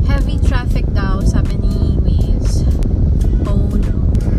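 A steady low rumble inside a car cabin, with music and a voice over it.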